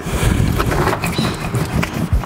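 A small hard paint roller rolled over foil-faced Dynamat Extreme sound-deadening sheet on a steel floor pan, making a steady, rough rolling and rubbing noise.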